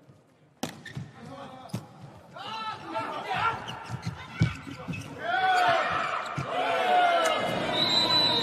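Indoor volleyball rally: the ball is hit with sharp smacks a few times, the loudest a little past the middle, amid players' shouts that grow louder and more continuous in the last few seconds as the point is won.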